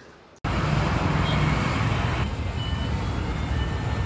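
Street traffic noise: a steady rumble of passing vehicles that starts abruptly about half a second in.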